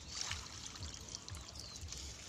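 Faint trickling and dribbling of pond water around a person moving in water up to the shoulders.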